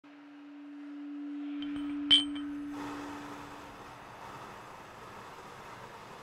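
Intro sound effect: a steady low hum swells in, then a single sharp clink with a short ringing tone about two seconds in. The hum then fades away over the next two seconds, leaving a faint steady hiss.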